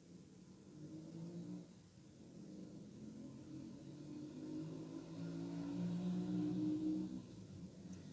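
A low mechanical hum, growing louder over several seconds and dropping away shortly before the end.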